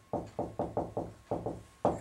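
Dry-erase marker knocking against a whiteboard as a word is written: a quick, uneven run of about a dozen short taps.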